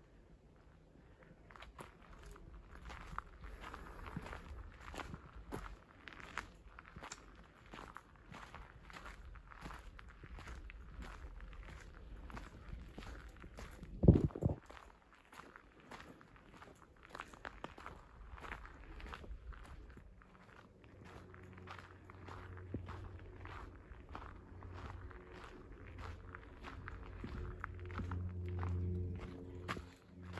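Footsteps of a person walking at a steady pace on a dirt forest trail, with one loud thump about halfway through. A low hum joins in for the last third.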